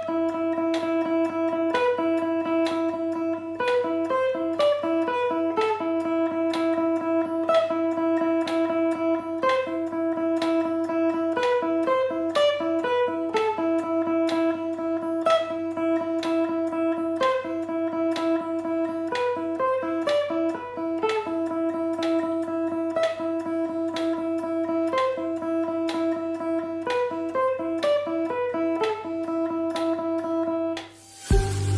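Yamaha Pacifica electric guitar playing a fast alternate-picked exercise on the high E string: the open E note repeats steadily, and fretted notes break in between it in a short repeating melodic figure.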